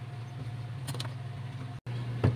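A metal spoon scraping seeds and pith out of a halved bitter gourd, with a couple of short scrapes about a second in, over a steady low hum. The sound cuts out briefly near the end.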